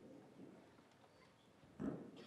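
Quiet conference-hall room tone with faint low murmur, broken near the end by one short, muffled low bump.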